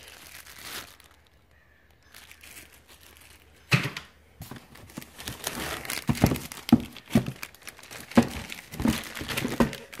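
Plastic wrapping and cardboard packaging being handled and crinkled as parts are taken out of a shipping box. A sharp knock comes about four seconds in, followed by a run of irregular rustles and knocks.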